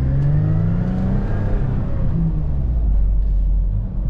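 Toyota FJ Cruiser's 4.0-litre V6 engine revving hard while driving up sand dunes, heard from inside the cabin. The engine note climbs in pitch for about the first second, then falls back.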